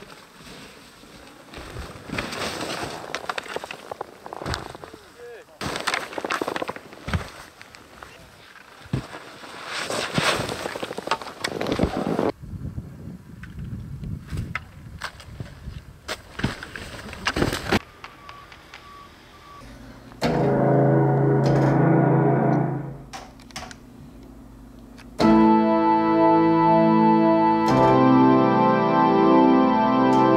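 Skis hissing through deep powder snow with wind buffeting the microphone, in uneven swooshes, then a few sharp knocks. Keyboard music comes in about two-thirds of the way through and gets louder near the end.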